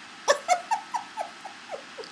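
A woman giggling: a run of short, falling, pitched notes, about five a second, that grow weaker as the laugh dies away.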